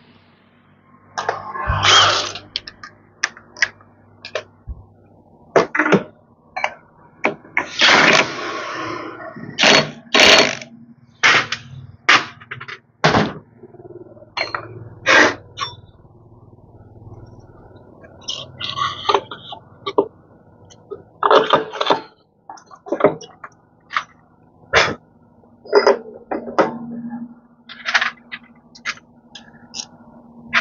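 Irregular clanks, knocks and clicks of metal scooter parts and hand tools being handled, with longer scraping noises about two and eight seconds in, over a faint steady hum.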